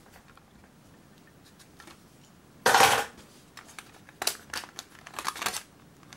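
Thin tinplate toy bus body being prised apart by hand: a short rasping scrape near the middle, then a run of small metallic clicks and scrapes.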